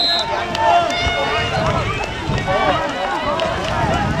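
Many voices shouting and calling over one another at once, players and spectators at a canoe polo game. A high whistle blast ends just as it begins.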